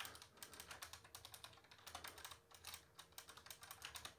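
Computer keyboard typing, faint: a quick run of keystrokes, several a second, with short pauses between bursts.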